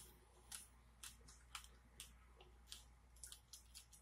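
Faint close-miked chewing of a ripe strawberry: soft, wet mouth clicks and crunches about twice a second.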